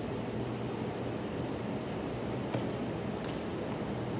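Steady low hum and hiss of background room noise, with a faint click about two and a half seconds in.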